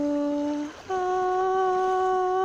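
A voice humming two long held notes, the second pitched higher than the first, with a short break between them about three-quarters of a second in.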